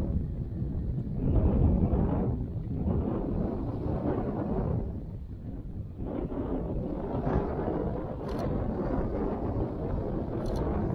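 Wind buffeting the microphone, swelling and easing in gusts, with a couple of light clicks near the end.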